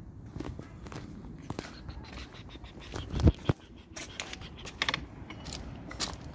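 Footsteps of a person walking across paving slabs and onto grass, irregular scuffs and clicks, with one loud low thump about halfway through.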